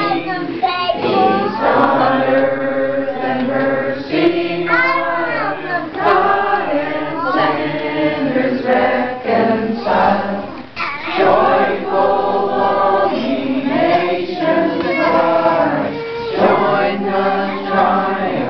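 A group of people singing a Christmas song together, several voices at once, holding and sliding between notes.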